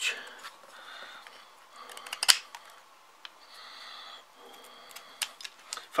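A black-bladed tactical knife scrapes briefly across a small wooden stick as it carves, with one sharp click a little over two seconds in and a few lighter ticks.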